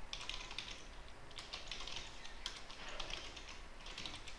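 Faint computer keyboard typing, key clicks coming in short runs with brief pauses between them.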